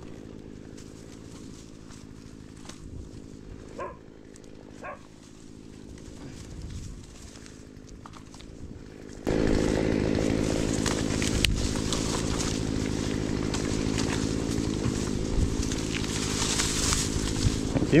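A chainsaw comes in suddenly about halfway through and runs steadily from then on. Before it there is only a low background with two short whines about four and five seconds in.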